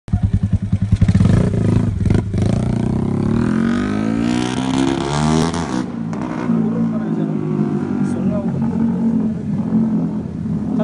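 Yamaha Sniper MX 135's single-cylinder four-stroke engine running close by, then pulling away with its pitch climbing steadily as it revs up. The rising note breaks off about six seconds in, and the engine runs on at a steadier, lower pitch.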